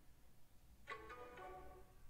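Faint playback of the cartoon character's recorded voice line from the animation project, heard for about a second in the middle. It is barely audible because the playback volume has been turned down.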